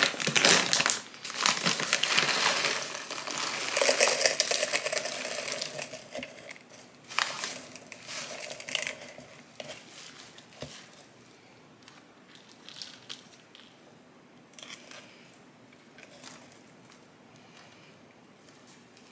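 A clear plastic zip bag crinkling as chunky potting mix is poured and shaken out of it into a plastic pot, with gritty rattling of the mix. It is loudest over the first few seconds, comes in a few more bursts, then dies down to soft, scattered rustles.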